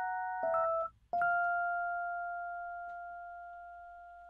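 Scarbee Mark I sampled electric piano played from a keyboard, with single notes rather than a full beat. A couple of notes are struck about half a second in and released just before a second, then another note is struck just after a second and left to ring, slowly fading.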